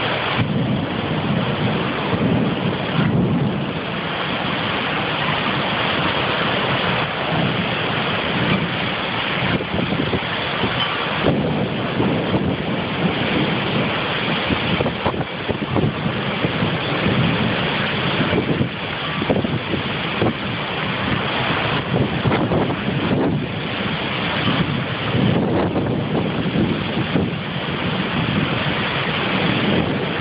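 Heavy rain driven by very strong microburst winds, with wind buffeting the microphone: a dense, steady rush that rises and falls a little.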